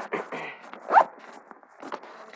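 Zipper on a fabric tackle backpack being pulled open in short rasps, the loudest a rising zip about a second in.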